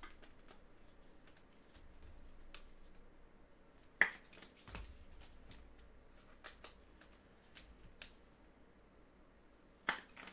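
Faint handling of trading cards: scattered light clicks and taps, with a sharp click about four seconds in and another just before the end.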